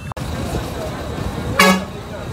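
Steady street traffic noise with one short vehicle horn toot about one and a half seconds in.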